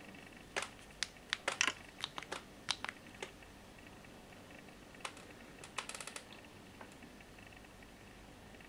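Scattered light clicks and taps from an iPhone 5 being handled and its touchscreen worked to place a call, in a cluster over the first three seconds and another about five to six seconds in.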